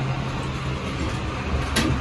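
Steady low hum inside a Westinghouse high-rise traction elevator car as it sets off upward, with a single sharp click near the end.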